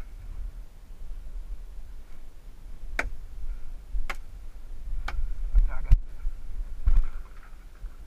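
Paintball fire around a wooden bunker: five sharp cracks roughly a second apart, the one near six seconds the sharpest, over a low rumble of wind and handling on the camera microphone.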